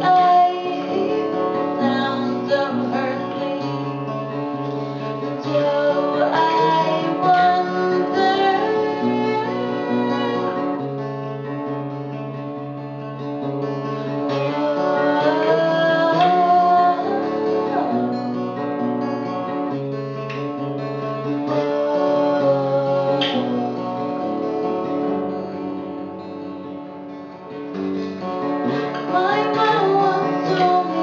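A steel-string acoustic guitar played in chords, with a woman singing the melody over it.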